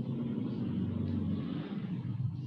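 A low, steady rumble heard through a video-call microphone.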